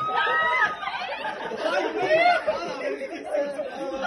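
Overlapping voices of a small group of people talking at once in a room.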